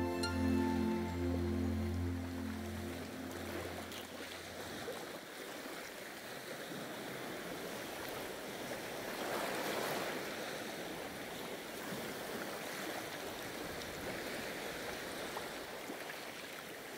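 Soft music with sustained low notes fades out in the first few seconds, giving way to the steady wash of ocean waves on a rocky shore, which swells louder about ten seconds in.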